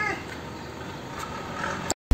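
Domestic cat meowing once, a short call that rises and falls right at the start. Faint background sound follows, then the sound cuts out just before the end.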